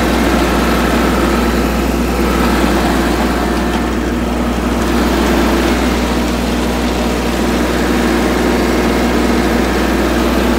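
Compact tractor's engine running steadily as the tractor drives along, heard from the driver's seat.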